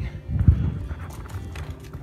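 Muffled thumps and knocks from a handheld phone being swung round and carried, loudest about half a second in.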